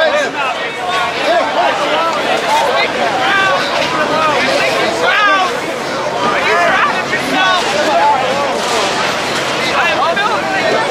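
A crowd of many voices talking and shouting over one another, loud and continuous, with no single voice standing out.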